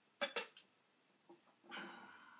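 Porcelain tea strainer set down on a glass tea pitcher: two sharp clinks in quick succession, then a softer scrape with a faint ring near the end.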